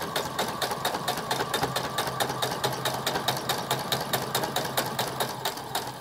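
Brother sewing machine fitted with a walking foot, stitching a towel hem at a steady speed: a constant motor hum under rapid, even needle strokes at about seven a second.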